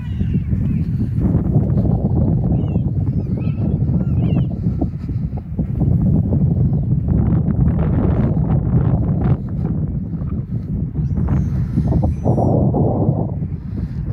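Wind buffeting the microphone: a loud, uneven low rumble. Faint high bird calls come through a few seconds in and again near the end.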